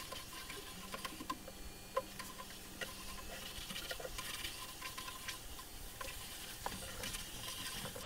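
Faint, irregular clicks and taps of a computer mouse and keyboard in use, over a low steady hum.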